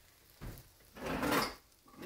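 Kitchen handling noise at the stove: a light knock about half a second in, then a short scraping rustle around a second in.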